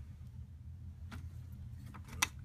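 Steady low hum in a quiet workshop, with one faint click about halfway through as gloved hands handle the plastic cleaner head of a Dyson DC07 upright.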